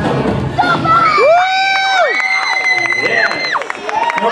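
Dance music cuts off about half a second in, and a young audience breaks into cheering, with several long, high-pitched overlapping screams. Clapping joins toward the end as the routine finishes.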